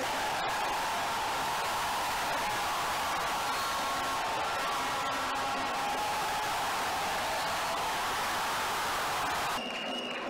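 Steady crowd din from stadium spectators during play, with a brief drop near the end.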